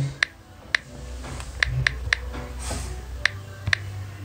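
Key clicks from typing on a tablet's on-screen keyboard: seven short, sharp clicks at an uneven pace over a faint low hum.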